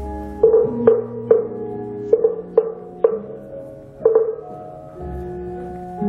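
Javanese gamelan playing: struck metal notes ring out in an uneven run, a repeated middle note sounding every half second or so, over lower held tones.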